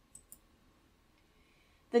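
Two faint, short clicks close together, then a near-silent pause before a woman's voice resumes near the end.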